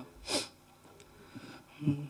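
One short, sharp burst of breath noise close to a microphone, about a third of a second in, like a sharp exhale, sniff or sneeze into the mic; a voice starts up again at the very end.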